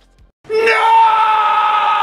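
A man's long, drawn-out scream, one held cry at a nearly steady pitch that starts about half a second in.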